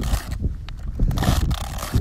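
A sneaker rubbed against the stiff spines of a clumped barrel cactus: a dry, scratchy scraping in a series of short strokes.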